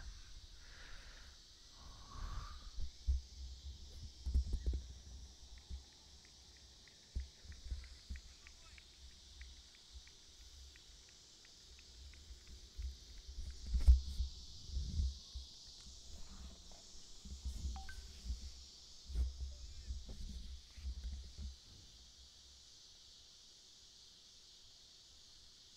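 Faint open-air field ambience with irregular deep thumps and bumps, one sharper knock about 14 seconds in, a steady faint high hiss, and faint distant voices.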